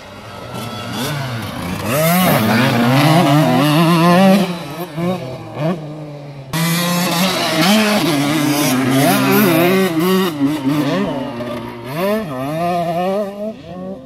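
KTM 85 SX two-stroke motocross bike engine revving hard, its pitch rising and falling over and over as the throttle opens and closes. The sound drops back for a moment and then comes in loud again abruptly about six and a half seconds in.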